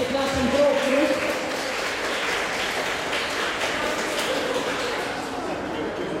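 Dance music cuts out about a second in, followed by a few seconds of applause and crowd chatter.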